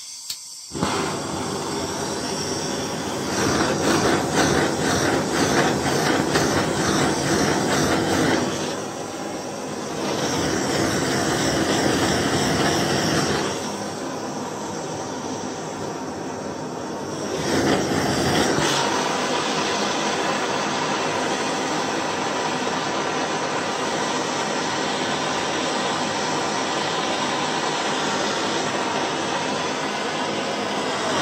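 Handheld gas blowtorch lighting about a second in, then burning with a steady rushing roar whose loudness shifts a few times as the flame is moved.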